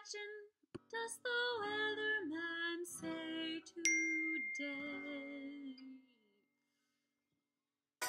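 A woman singing held, stepping notes of a children's song, with acoustic guitar under it after a short break near the start. About four seconds in, a single high electronic notification ding from a phone or computer cuts across the singing and rings on for about two seconds.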